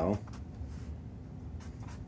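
Black felt-tip marker drawing short strokes on paper: a few faint, scratchy pen strokes.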